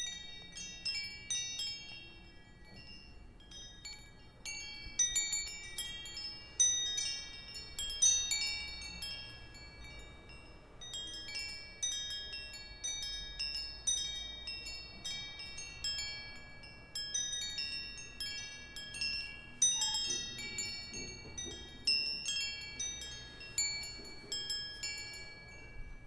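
Bright, high chime tones struck one after another in a quick, irregular stream, each ringing briefly and overlapping the next; sparser for the first few seconds, then thicker.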